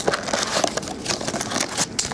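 Plastic shrink wrap crinkling and crackling as it is pulled off a trading-card hobby box, a dense run of irregular crackles.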